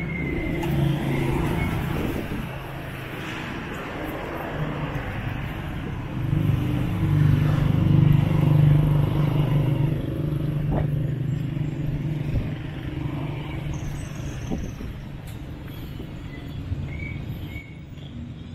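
Motorcycle tricycle engine idling close by, running louder for a few seconds in the middle, over general street traffic noise.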